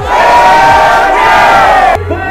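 A crowd of many voices shouting together, loud and sustained, starting and cutting off abruptly.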